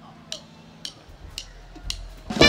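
A drummer's count-in: four sharp stick clicks, evenly spaced about half a second apart, setting the tempo for the band.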